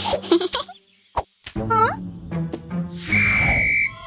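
Cartoon sound effects over light background music: a short vocal sound at the start, a click, a quick rising glide, then a shrill steady whistle with a hiss for most of the last second.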